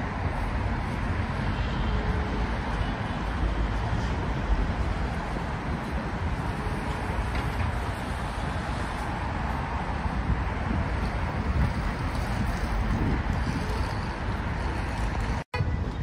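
Street traffic noise: a steady wash of passing vehicles with a low rumble. It cuts out for a moment near the end.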